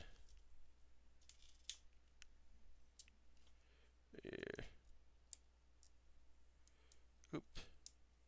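Faint, scattered clicks of plastic LEGO bricks being handled and pressed together, with a short vocal sound from the builder about four seconds in.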